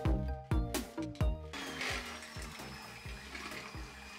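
Background music with a beat for about the first second and a half. Then an electric hand mixer runs in a bowl of liquid batter, a steady whirr with a faint high whine, while the music's beat carries on softly underneath.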